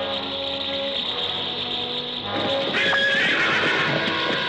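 Horses whinnying in alarm over film score music, with a louder, shrill whinny from about two and a half seconds in.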